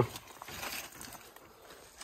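Quiet footsteps on dirt and the rustle of brush and pine branches brushing past while walking through scrub.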